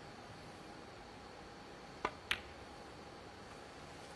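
Snooker cue tip striking the cue ball, then about a quarter second later the cue ball clicking sharply into a red, against a faint, hushed arena background.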